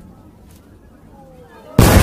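Fireworks: a low hiss with faint sliding whistles, then a loud, sudden burst of fireworks explosions near the end.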